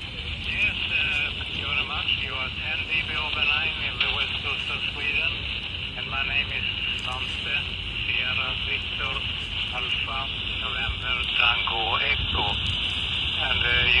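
Single-sideband voice received on a Quansheng UV-K5 handheld on the 20 m amateur band, heard through its speaker under a steady band of hiss.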